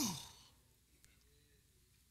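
A man's drawn-out, breathy "oh", falling in pitch and fading out within the first half second. Then a quiet pause.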